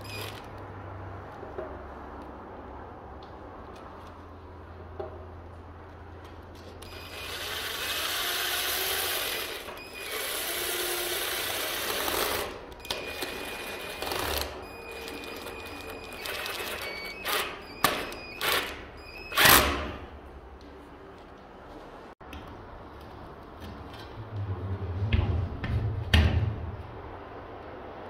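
A small power tool, such as a cordless driver, runs in two long spells with a faint whine and then in several short bursts while a flexible duct is fastened to the diffuser neck. Low knocks and handling thumps follow near the end.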